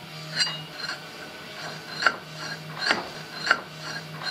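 Hand-tool work on steel: about five short, sharp scraping strokes at irregular intervals, over a faint steady low hum.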